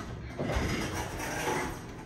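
Elevator car and landing doors sliding open: a click as the door operator starts, then about a second and a half of steady sliding rush as the doors run open.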